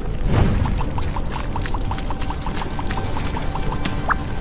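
Cartoon soundtrack of music and sound effects: a falling swoop just after the start, then a quick even run of light ticks, about six a second, over a low hum.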